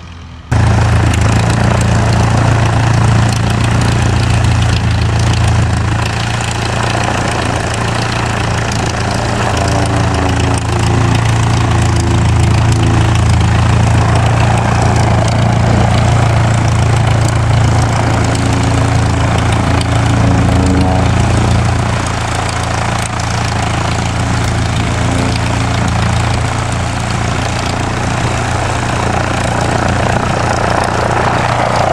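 Small aerobatic biplane's piston engine running steadily at low power on the ground, propeller turning, with a deep, even hum; it comes in suddenly about half a second in.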